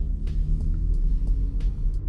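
3.6-litre V6 of a 2018 Jeep Grand Cherokee with an aftermarket exhaust, heard from inside the cabin as a steady low rumble while the SUV accelerates gently from low speed in automatic mode, revving up toward the transmission's shift point of about 2,000 rpm.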